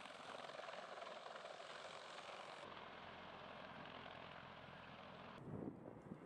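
Faint, steady rushing drone of a CH-53E Super Stallion heavy helicopter's rotor and turbines in flight. The sound shifts abruptly about two and a half seconds in, and gives way to low wind rumble on the microphone near the end.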